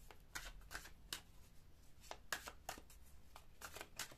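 A deck of oracle cards being shuffled by hand: a quiet, irregular run of short card clicks and slaps, some in quick pairs.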